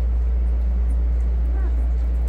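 A steady low hum throughout, with a brief faint high squeak from a nursing week-old puppy about one and a half seconds in.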